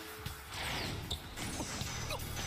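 Soundtrack of a basketball anime episode playing quietly: background music under a steady noisy haze.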